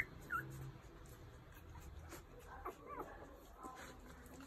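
Newborn puppies whimpering: two short, high squeaks right at the start, then a few thin, wavering cries about two and a half to three seconds in.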